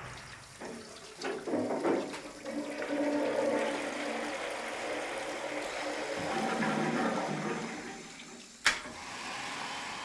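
A toilet flushing: a rush of water that swells and runs for about six seconds, then dies away. A single sharp knock comes near the end.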